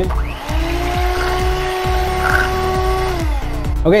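Electric hand mixer running at one steady pitch, beating the raw egg mixture in a bowl, then winding down a little after three seconds. Background music with a steady beat plays underneath.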